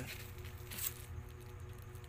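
Faint clicks and scrapes of a screwdriver and hands on a hair clipper as the screws holding its blade are fitted, over a steady low hum.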